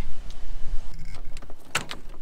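A car door being opened: low rumble of handling at first, then a couple of sharp clicks near the end.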